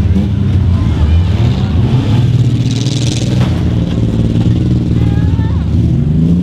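Demolition-derby compact cars' engines running together in a steady low drone, with a short rush of hissing, scraping noise about three seconds in.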